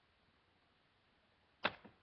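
Quiet room tone, then one sharp click about one and a half seconds in from a small makeup container being handled.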